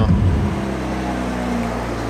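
Porsche 992 GT3 RS's naturally aspirated flat-six idling steadily at an even, unchanging pitch.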